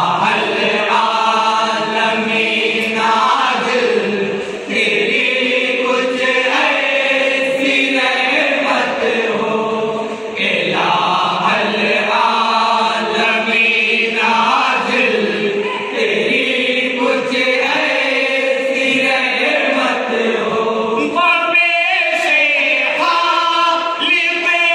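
Group of men singing an Islamic devotional song (naat) together in unison, unaccompanied by instruments, in long held phrases, with wavering ornamented notes near the end.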